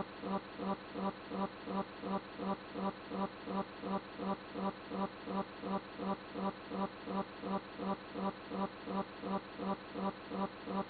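A short buzzy pulse of steady pitch, repeating very evenly about three times a second like a looped sound.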